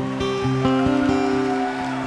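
Acoustic guitar playing sustained chords with a few plucked notes, in a gap between sung lines of a slow folk song.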